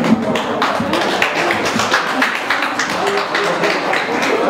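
Several people clapping their hands in quick, uneven claps over background music.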